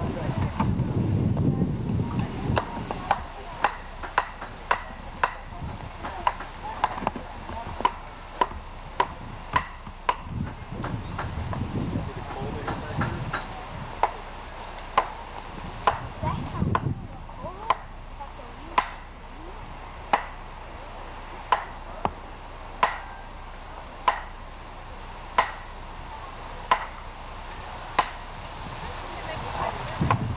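Repeated sharp knocks of a hand tool striking wood, about one a second and some thirty in all. There are gusts of low wind rumble on the microphone near the start.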